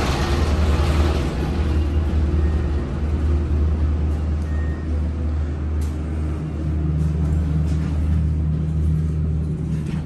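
Montgomery traction elevator heard from inside the cab while the car travels between floors: a steady low rumble of the running car. There is a brief hiss at the start.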